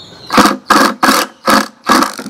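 Cordless drill driving a screw through an iron hinge into the wooden lid, run in about five short trigger bursts to seat the screw.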